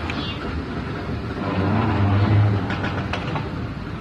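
Steady noise of a busy airport concourse heard from a moving walkway, with a low hum that swells in the middle and a few short clicks near the end.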